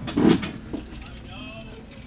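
People's voices: a loud outburst about a quarter second in, then a drawn-out, wavering cry near the end.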